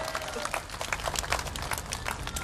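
Applause from a crowd: many separate, irregular claps.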